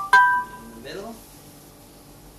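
Two-note electronic chime: a lower note, then a higher note that rings and fades over about half a second.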